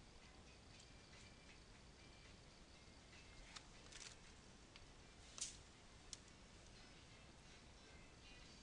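Near silence: faint room hiss with a few soft, short clicks, the clearest about five and a half seconds in.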